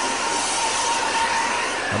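Fire engine running at a fire scene: a steady rushing noise with a faint, high, steady whine that fades out after about a second and a half.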